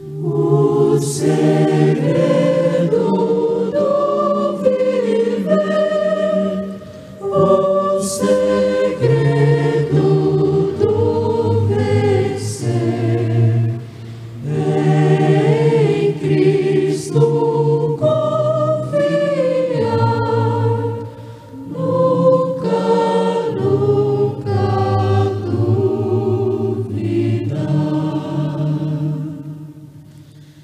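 A choir singing a hymn in several voice parts, in phrases separated by brief pauses about every seven seconds.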